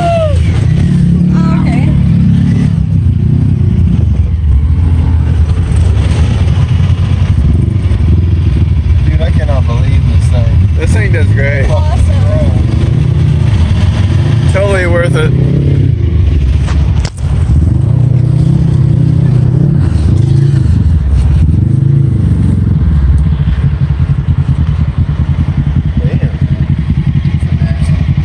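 Side-by-side UTV engine running under load, its pitch rising and falling with the throttle. Voices call out briefly over it near the middle, and the sound cuts out for an instant about two-thirds of the way through.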